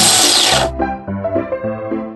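Electric coffee grinder running in a short, loud whir lasting under a second, over electric-piano background music.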